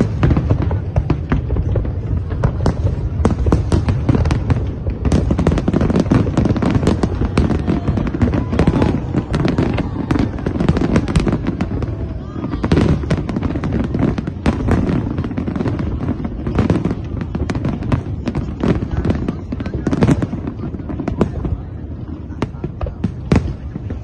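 Aerial fireworks display: a dense, unbroken run of bangs and crackling bursts over deep booming, loud throughout.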